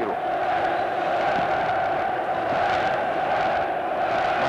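Basketball arena crowd chanting in unison, a loud, steady, sustained sound.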